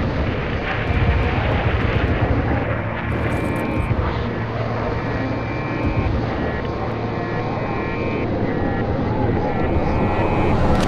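A loud, steady rumble of engine noise, heaviest in the low end, with a faint high tone coming and going over it.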